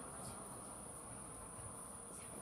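Crickets singing in a steady, unbroken high-pitched trill.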